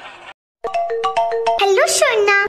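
Mobile phone ringtone playing a melody of short stepping tones, starting about half a second in after a brief silent cut.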